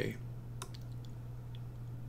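A few faint, short computer mouse clicks over a steady low electrical hum.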